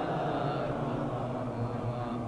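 A gathering of men reciting the salawat (blessings on the Prophet) together under their breath, an unsynchronised murmured group chant in Arabic. It is their response to the verse calling on believers to send blessings on him.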